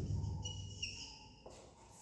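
Whiteboard marker squeaking on the board as letters are written: one short high squeak that steps down in pitch, followed by a soft knock of the marker on the board.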